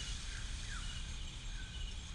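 Outdoor ambience of insects chirping steadily in high thin tones, with a few short falling chirps over a low rumble.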